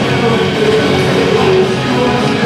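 Punk rock band playing live and loud: electric guitars, bass guitar and drums.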